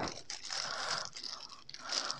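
Thin plastic packaging crinkling and rustling as hands pull it open around a boxed selfie stick. The rustle is soft and irregular, a little louder near the start.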